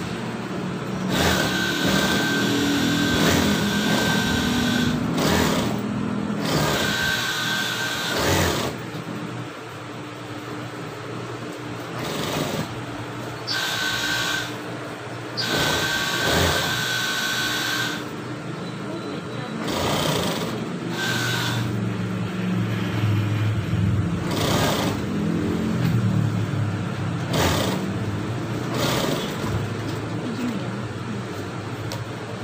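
Industrial sewing machine stitching fabric in short runs of a few seconds, starting and stopping repeatedly, with a steady whine from the motor while it runs.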